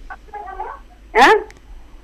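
Speech only: a faint, muffled voice, then one short spoken 'haan' about a second in, its pitch rising and falling.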